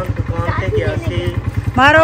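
Small Honda motorcycle's single-cylinder engine idling with a steady, rapid putter, with voices over it.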